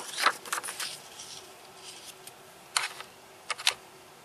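A sheet of paper being shifted and held by hand: a handful of short rustles and crinkles, clustered in the first second and again near the end, over a faint steady hum.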